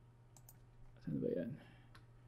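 Faint clicking of a computer keyboard and mouse, with a short hummed vocal sound about a second in.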